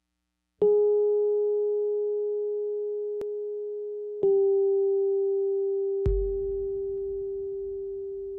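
Background music from a soft electronic keyboard: one sustained note struck about half a second in and again around four seconds, each slowly fading. A low thud comes in with another strike of the note around six seconds.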